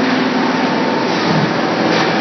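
Continuous mechanical noise of an in-line extrusion and thermoforming line for polypropylene flowerpots running, a steady dense machine din with a low hum under it.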